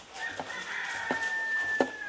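A single long, high call held for nearly two seconds, sagging slightly in pitch at the end, over a few footsteps on a hard floor.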